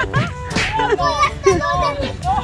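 Children's excited voices and squeals at play, over background music with steady held notes.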